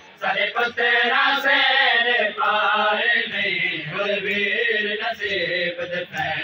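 Male chanting of a noha, a Shia lament, sung in long drawn-out lines with held notes.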